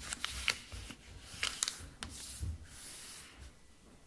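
A sheet of paper being folded in half by hand on a wooden table and its crease pressed flat: sharp paper crackles in the first couple of seconds, then a longer rubbing sound as fingers run along the fold.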